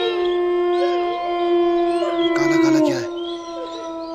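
A dog howling: one long, drawn-out howl held at a nearly level pitch, dipping slightly about three seconds in. A short noisy rustle sounds about two and a half seconds in.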